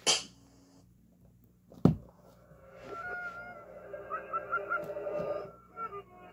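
The sesamestreet.com website promo's audio played backwards through a tablet's small speaker: a layered, pitched run of sound with short gliding notes that starts about two seconds in and fades near the end. Just before it starts there is a single sharp knock.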